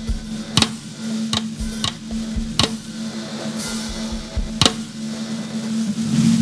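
Drum kit played softly with sticks, mostly quiet snare strokes with a handful of sharp accented hits spaced irregularly, over a steady low ringing tone from the drums.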